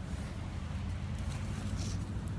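Steady low rumble of wind and handling noise on a handheld phone's microphone, with a brief rustle near the end.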